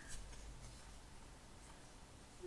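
Faint rubbing and handling sounds from hands holding and shifting a textured mixed-media shadow box, barely above room tone.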